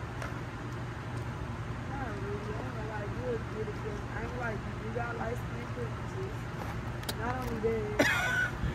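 Faint voices talking in the background, indistinct, over a steady low hum.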